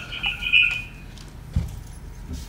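A steady high electronic tone that stops about a second in, followed by a single low thump about one and a half seconds in.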